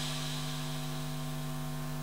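Steady electrical hum with a faint hiss under it, unchanging throughout.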